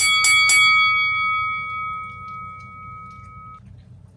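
A bell struck three times in quick succession at the start, then ringing on and slowly fading away over about three and a half seconds, marking the start of the challenge.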